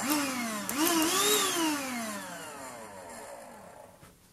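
Cordless handheld vacuum cleaner's motor whining. The whine falls, climbs again sharply about two-thirds of a second in, then winds down in a long, steadily falling whine that fades out as the motor spins down.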